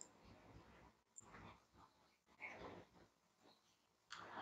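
Near silence: room tone, with a few faint brief sounds about halfway through.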